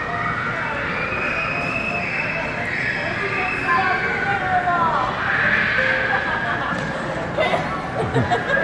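Indistinct voices and children's chatter over the steady hubbub of a shopping mall.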